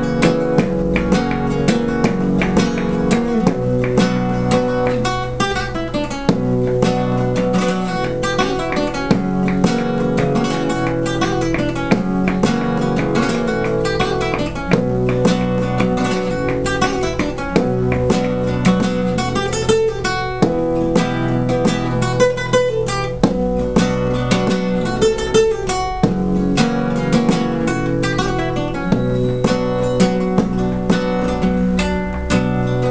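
Solo nylon-string flamenco guitar playing a melodic rumba: plucked melody notes over strummed chords, with sharp percussive strokes keeping a steady rumba rhythm.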